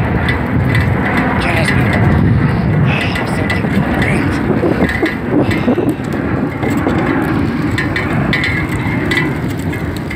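Bicycle rolling over a wooden boardwalk, its tyres running over the planks in a steady rumble dense with small knocks.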